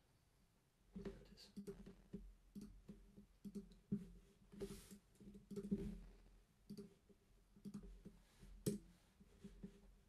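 Faint, irregular clicks and taps of a computer mouse and keyboard being used to edit a score in music-notation software, starting about a second in.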